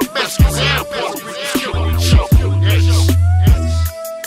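Gangsta rap track: a rapped vocal over a hip hop beat with deep, sustained bass notes and sharp kick-drum hits.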